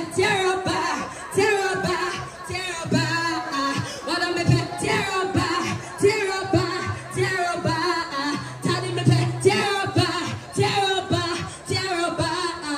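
Live stage music played loud through a PA system: a woman sings into a microphone over a backing track with a beat and a deep bass note that keeps coming back.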